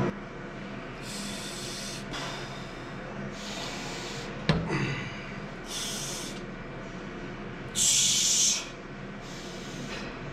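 A lifter's forceful breaths during a set of barbell bench presses: short hissing exhales about every two to two and a half seconds, the last one loudest. A single sharp knock about halfway through.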